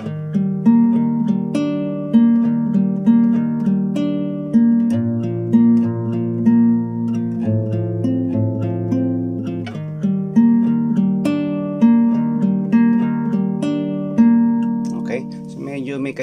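Nylon-string classical guitar with a capo being fingerpicked in a slow arpeggio pattern: single notes about two a second ring over a bass note that changes every two to three seconds. A man's voice comes in just before the end.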